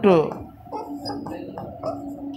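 The end of a spoken word, then soft irregular taps and scrapes of a stylus writing on an interactive smart board, over a steady low hum.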